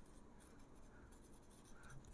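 Faint scratching of a marker pen writing on a whiteboard.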